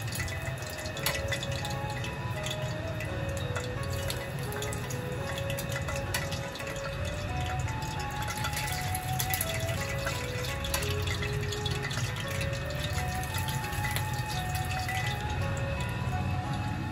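Hot oil ladled over the skin of a tilefish fillet in a wire-mesh strainer, crackling and dripping back into the pan as it fries the scales crisp. Background music with a simple stepping melody plays over it.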